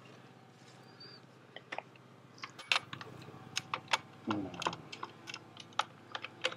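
Metal clicks and clacks from a hand-operated butt-fusion machine for polyethylene pipe as its clamps and levers are worked. The sharp, irregular clicks start about a second and a half in and run on.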